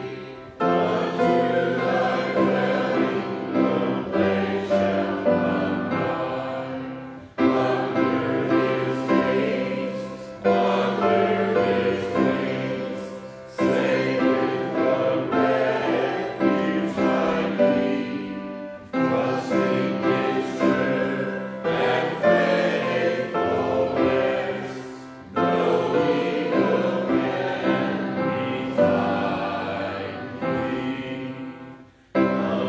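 A church congregation singing a hymn together, line by line, with brief breaks between phrases.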